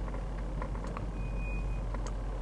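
Low, steady engine and road rumble inside a car cabin while reversing, with a single electronic reversing beep about a second in, lasting under a second.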